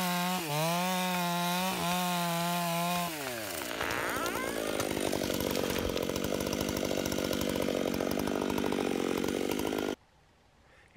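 Large chainsaw at full throttle, cutting through the trunk of a big conifer, then let off about three seconds in, its pitch falling away. The tree then goes over, with a long run of cracking, splintering wood and crashing branches that cuts off suddenly at the end.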